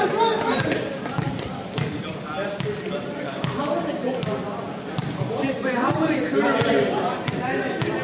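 Volleyballs being struck and bouncing on a hard sports-hall floor: irregular sharp slaps and thuds in a large indoor hall, over players' voices calling and chatting.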